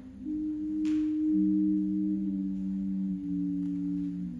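Two low-register ocarinas playing a slow duet of long held notes, one entering below the other about a second in so the two tones sound together, each moving to a new note in a single step.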